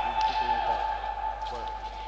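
Electric fencing scoring apparatus sounding its steady single-pitched tone after a touch is registered in a foil bout.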